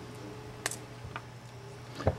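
Two light ticks about half a second apart as fingers handle fishing line, over a faint steady hum.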